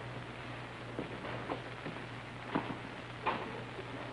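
Steady low hum and hiss of an old television soundtrack, with a few faint, irregular knocks.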